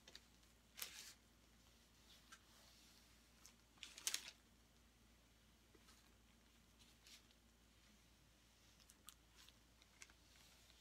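Near silence broken by a few brief, faint rustles and scrapes of gloved hands handling a canvas as it is tipped; the loudest comes about four seconds in, with another about a second in.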